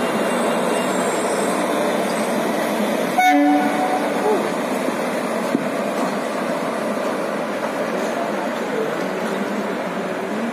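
Electric-hauled passenger train rolling past with a steady rumble of wheels and coaches. A short train horn blast sounds about three seconds in.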